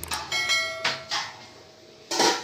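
Large stainless-steel pot lid knocked, ringing with a bright metallic tone that fades within about a second.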